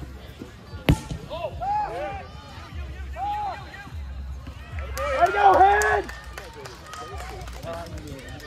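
A rubber kickball struck once with a sharp smack about a second in, followed by players shouting and calling out across the field, loudest a little past the middle.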